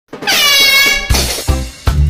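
A single air horn blast, about a second long. Its pitch rises as it sounds and then holds steady before it cuts off. Music with heavy bass thumps follows.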